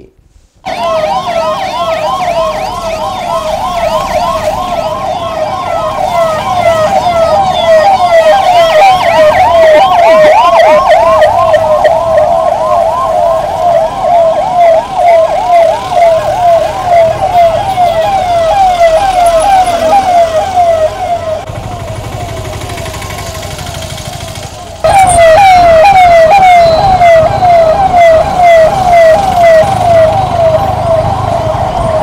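Electronic police siren on a patrol vehicle, sounding a fast yelp: rapid rising-and-falling wails about three times a second, over low vehicle noise. It grows fainter past the twenty-second mark, then comes back loud suddenly about 25 seconds in.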